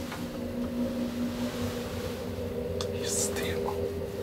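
Luth & Rosén traction elevator running: a steady hum from the drive heard inside the car, whose tone shifts about halfway through. A short whisper-like hiss with a few faint clicks comes about three seconds in.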